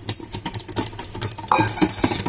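Stainless steel cup knocking against a mesh strainer as cocoa powder is shaken out of it: a quick, irregular run of light clicks and taps, louder from about three-quarters of the way through.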